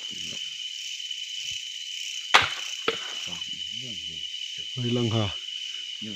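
Night insects, crickets, chirring in a steady high continuous tone. A single sharp click a little over two seconds in is the loudest sound, followed by a smaller click about half a second later.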